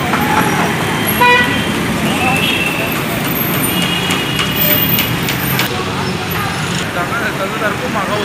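Street traffic: vehicle engines and road noise, with horns tooting. There is a short horn blast about a second in and another longer toot between about four and five seconds.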